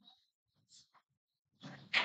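Pool shot near the end: the cue ball is struck and cracks into the object balls, a sharp clack that is the loudest sound. A short vocal sound overlaps it just before. The rest is mostly quiet.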